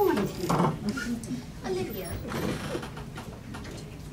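A person's voice, the words not made out, growing quieter toward the end.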